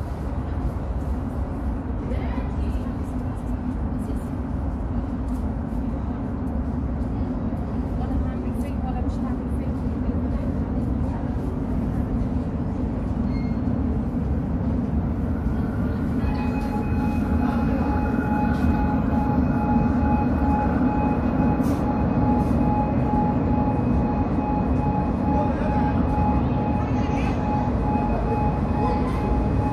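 Cairo Metro train approaching an underground platform through the tunnel: a low rumble that grows slowly louder, joined about halfway through by a steady high whine.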